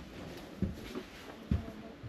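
Two soft footsteps on a floor strewn with debris, about a second apart.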